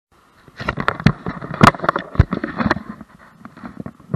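Handling noise from a hat-mounted action camera just switched on: a rapid jumble of knocks, clicks and rubbing on the camera body and its microphone. It thins out to a few scattered knocks after about three seconds.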